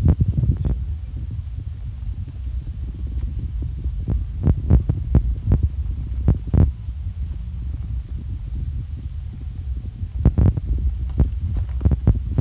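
A car rolling slowly over a rough gravel road: a steady low rumble from the tyres and running gear, with scattered sharp knocks and ticks of loose stones under the wheels, bunched about four to six seconds in and again near the end.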